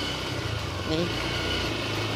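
Motorcycle engine running with a steady low drone, heard from the rider's seat. A brief vocal sound comes about a second in.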